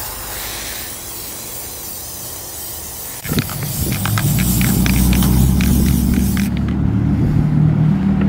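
Aerosol spray can hissing steadily as paint is sprayed onto a chrome truck grille. About three seconds in, a louder low rumble with a steady hum comes in and stays, over the thinning hiss.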